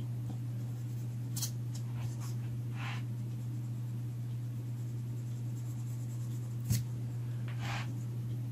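A rubber eraser rubbing on drawing paper in a few short, faint strokes, removing excess pencil construction lines, over a steady low hum. A small knock comes near the end.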